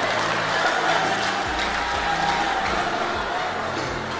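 A church congregation applauding and cheering over a keyboard playing sustained chords and bass notes.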